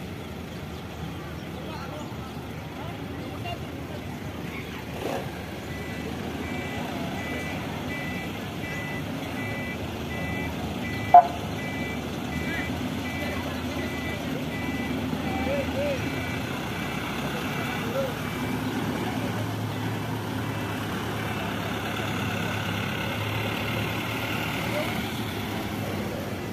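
Street ambience of army trucks' engines running, with a vehicle's reversing beeper sounding a steady run of short beeps for several seconds. A single sharp, loud sound cuts in about eleven seconds in, and a low engine drone grows louder near the end.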